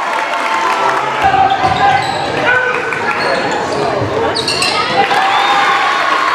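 Live basketball game sound echoing in a gym: a crowd's chatter and shouts, with the ball bouncing on the court and sneakers squeaking.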